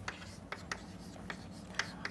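Chalk writing on a chalkboard: a handful of light taps and short scratches as a word is chalked up.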